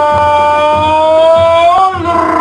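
A male football commentator's drawn-out goal cry. It is one long held note, rising slightly and bending up before it breaks off near the end.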